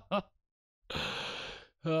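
A man's laugh tails off, then after a brief silence he lets out a breathy sigh lasting about a second, a resigned sigh at a stream that keeps dropping out.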